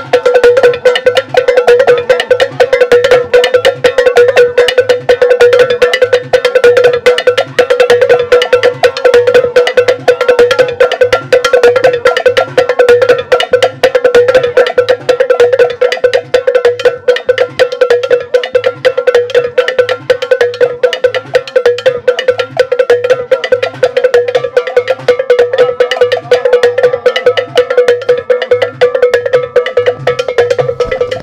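Hand-held flat metal gongs shaped like hoe blades, struck with sticks in a fast, steady, interlocking rhythm, each ringing at one clear pitch. A low beat repeats steadily beneath them.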